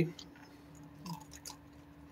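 Raccoon eating from a tray of dry food, chewing with faint, scattered crunchy clicks. A steady low hum runs underneath.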